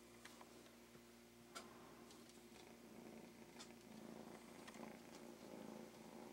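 Faint purring from a kitten, growing a little louder in the second half, with a few faint clicks.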